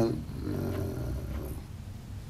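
A man's low, drawn-out creaky hesitation sound between words, a filler "eee" in vocal fry, growing fainter toward the end.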